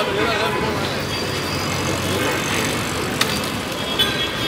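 Busy street traffic: a steady din of vehicle engines and tyres mixed with people's voices, a voice standing out at the start. A short sharp click about three seconds in.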